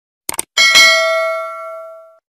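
Subscribe-button animation sound effect: two quick mouse clicks, then a bright bell ding that rings out and fades over about a second and a half.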